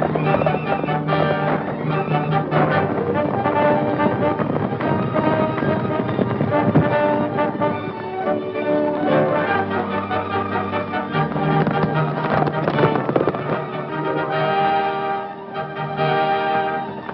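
Orchestral film-score chase music with brass, mixed with galloping horses' hooves and repeated sharp cracks of gunshots.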